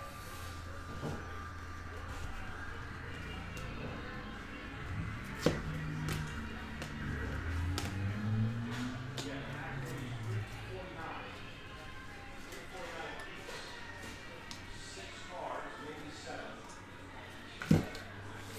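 Faint background music and voice under a steady low hum, with a few light clicks as chrome trading cards are handled and flipped, the clearest about five and a half seconds in.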